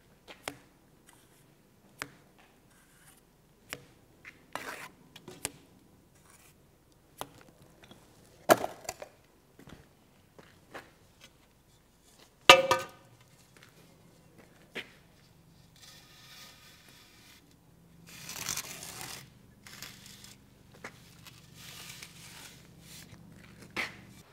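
Wet cement mortar being scraped off a plastered wall with a trowel and a long straight edge: intermittent short scrapes and taps, a sharp knock about halfway, and longer swishing strokes near the end.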